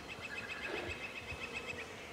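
A high, rapid chirping trill of even notes, about ten a second, that stops just before the end: small wild creature calling in the outdoor ambience.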